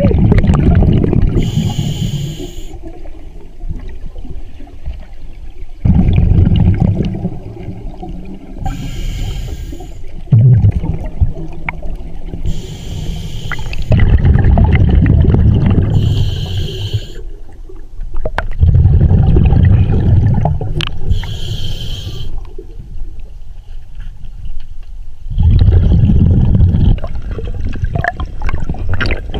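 Scuba diver breathing through a regulator underwater: a short hiss on each inhale, then a loud rumble of exhaled bubbles, about every five to six seconds.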